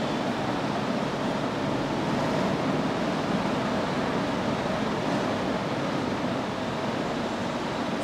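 A steady, even rushing noise with no distinct knocks, clicks or tones.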